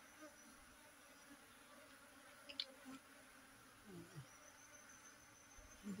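Faint, steady hum of a honeybee swarm clustered on a tree branch, with bees flying around the cluster.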